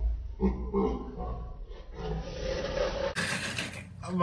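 Men making wordless vocal sounds in short voiced stretches over a deep low rumble. About three seconds in, the sound cuts abruptly to a brighter, noisier room recording.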